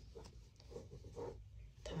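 Faint, soft scratchy rubbing of a crochet hook and macramé yarn as double crochet stitches are worked, the hook drawing the cord through the loops.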